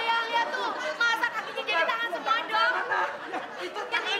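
Several people yelling and crying out over one another, high-pitched and overlapping so that no words stand out.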